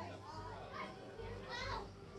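A group of children chattering and calling out, with a short high-pitched call about one and a half seconds in.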